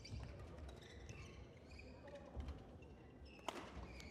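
Faint sounds of a badminton doubles rally in a large hall: players' footsteps and shoes on the court and light shuttle hits, with one sharp hit about three and a half seconds in.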